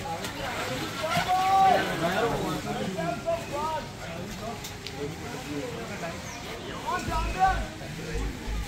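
Indistinct voices of people talking and calling, with no clear words.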